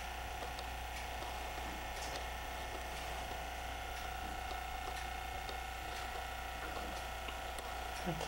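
Steady hum and hiss with a few faint scattered ticks; no distinct sound event.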